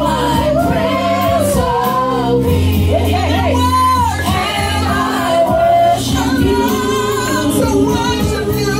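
Women singing gospel into handheld microphones over instrumental accompaniment. Under the voices, held low chords change about two and a half seconds in and again near six seconds.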